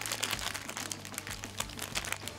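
Foil blind-bag packets crinkling and tearing as several are opened by hand: a dense run of small crackles.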